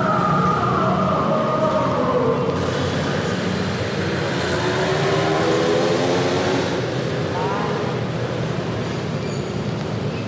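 Experimental ambient noise music: a dense, steady noisy wash with several tones sliding down in pitch over the first few seconds and a short rising glide later on.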